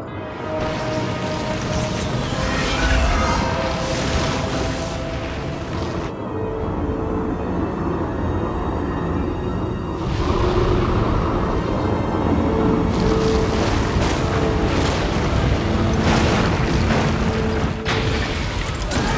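Tense film score with sustained held notes, mixed over deep booming and rumbling sound effects.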